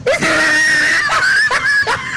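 A high-pitched, drawn-out screaming cry, broken off briefly twice in its second half.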